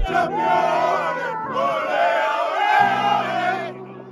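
A group of men shouting and chanting together in celebration, many voices at once, dying away near the end.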